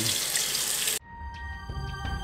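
Kitchen tap running into a sink while a hummingbird feeder part is washed under it. About a second in, the water sound cuts off abruptly and background music takes over.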